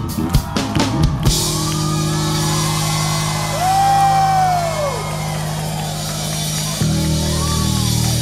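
A funk-rock band playing live: drums keep a beat, then about a second in the band holds a long chord under a wash of crash cymbals. A long note slides up and down over it, and the bass line changes near the end.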